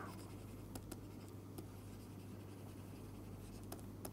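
Stylus writing on a pen tablet: faint scratches and a few light taps of the pen tip, over a steady low hum.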